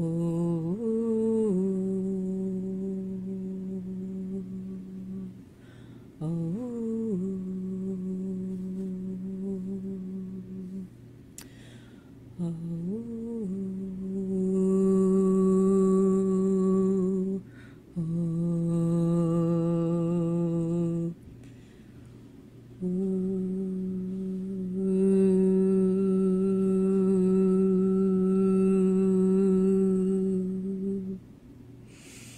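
A woman humming long, steady held notes on one low pitch, five phrases with short pauses between them, the first three opening with a quick rise and fall in pitch: meditative vocal toning.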